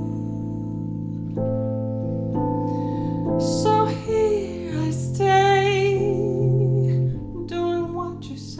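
A woman singing a slow ballad phrase while accompanying herself with sustained piano chords on an electronic keyboard, with a long held note with vibrato about five seconds in. She sings with her mouth properly open, giving more volume, a rounder tone and lyrics that can be heard.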